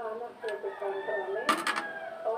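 Voices talking in the background, with a brief burst of clattering about one and a half seconds in.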